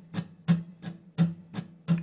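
Acoustic guitar strummed at a steady tempo: a stronger down strum about every 0.7 seconds with lighter up strums in between, the chord ringing under the strokes.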